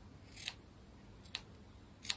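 Small scissors snipping through a scrap of fabric, two quiet snips about a second apart.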